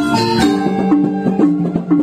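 Balinese gamelan angklung playing: bronze-keyed metallophones struck with mallets in fast interlocking patterns, the notes ringing over one another, with a lower note repeating about twice a second.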